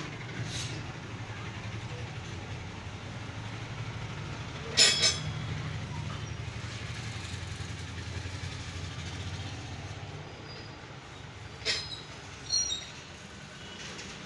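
Steady low background rumble, with sharp metallic clicks: a double click about five seconds in and two more near the end.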